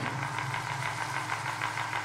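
A steady low electronic drone from the dance's recorded soundtrack, with a faint, fast, even ticking pulse above it.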